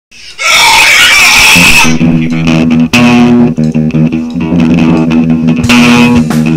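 Amateur rock band recording opening with a loud, shrill burst of noise for about a second and a half, then electric guitar and bass guitar playing a repeated line of low notes.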